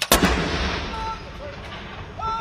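A single blank salute round fired from a 105 mm L118 light gun: one sharp report just after the start, followed by a long rumbling echo that slowly fades.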